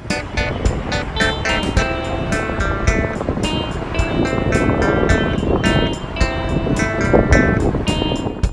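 Background music with a steady beat and pitched instrumental notes.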